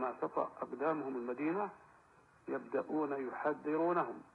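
A man speaking, most likely in Arabic, in two phrases with a short pause between, the voice thin and muffled as from an old recording.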